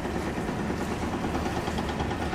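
Steady low mechanical hum, even throughout with no distinct knocks or changes.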